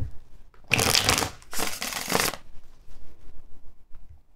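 A deck of tarot cards being shuffled by hand: two bursts of shuffling, each just over half a second long, the first about a second in, followed by faint handling of the cards.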